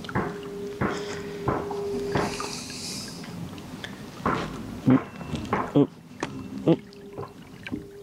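Pedal-drive fishing kayak under way: a run of irregular knocks and clicks from the pedal drive and hull, roughly one every half second to second, over water noise and a faint steady hum.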